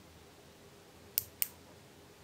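Two short, sharp clicks about a quarter second apart, a little over a second in: the ratchet clutch in the large thimble of a Shahe digital micrometer slipping as the spindle closes on a calibration rod. The slipping is the sign that the set measuring pressure has been reached.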